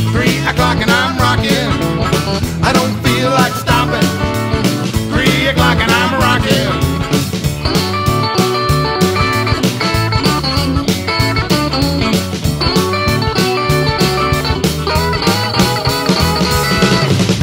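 Rock and roll band playing an instrumental break: an electric guitar lead with gliding, bending notes over bass and a steady drum beat.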